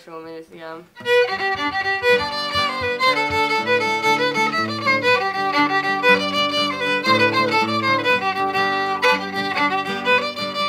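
Fiddle and acoustic guitar playing a tune together, coming in about a second in: a bowed fiddle melody over strummed guitar chords with low bass notes.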